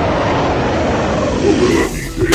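A loud, deep animal roar sound effect that dies away about a second and a half in, with the first beats of a hip-hop track coming in near the end.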